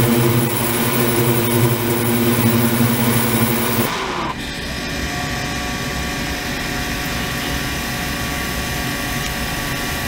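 Ultrasonic cleaning tank in operation, its 28 kHz and 72 kHz transducers and degassing/microbubble circulation unit switched by a control box, giving a steady electrical hum and buzz. About four seconds in the low hum drops out suddenly and the sound turns to a thinner, hissing buzz with a few higher steady tones, as the operating mode changes.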